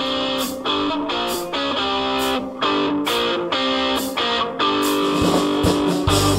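Concert band playing a rock arrangement: brass and woodwinds hold chords over a steady drum-kit beat. The low bass drops out and comes back in right at the end.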